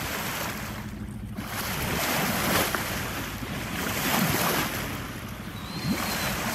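Sea water rushing and splashing along a sailing yacht's hull as dolphins surface beside it, with wind buffeting the microphone. The level swells a couple of times with louder splashes.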